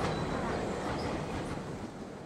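Steady running noise of a train on the tracks, slowly fading.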